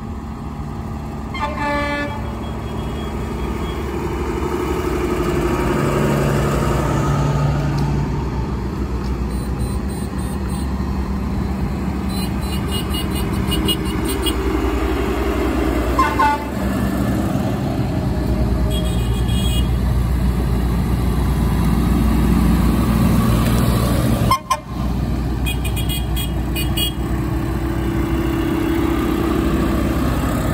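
Convoy of diesel tractors driving past close by, their engines rumbling steadily and growing louder, with short horn toots about two seconds in and again about sixteen seconds in.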